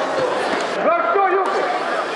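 Indistinct voices of people talking in a sports hall, no clear words.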